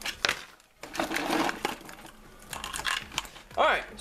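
Small hard-plastic toy dinosaurs and plastic toy trees clattering and knocking together as a hand rummages through them in a clear plastic bucket, in a run of irregular clicks and rattles.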